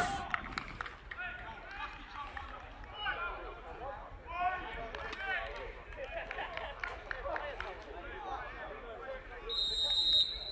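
Faint voices of footballers calling out across the pitch, then near the end a referee's whistle blows one steady high note to start the match.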